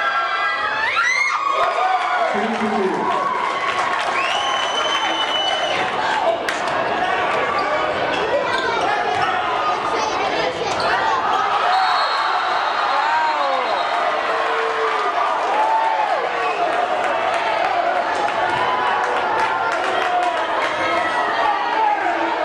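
Gymnasium crowd noise during a basketball game: many spectators talking and calling out, with a basketball bouncing on the hardwood floor and a few brief high squeaks.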